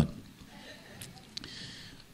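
Faint room noise with a couple of soft clicks, right after a man's voice stops.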